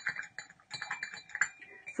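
Crumpled paper towel crinkling in the hand: a run of small crackles and ticks.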